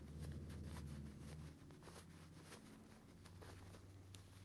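Near silence: faint rustling and ticks of cotton fabric being worked by hand as a sewn stuffed-bear arm is turned right side out, over a low steady hum.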